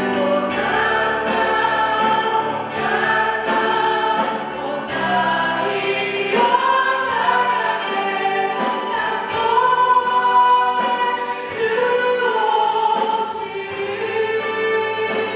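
Congregational worship singing: women worship leaders sing a Korean praise song into microphones over keyboard and guitar, with many voices joining in. The sung lines are long and held.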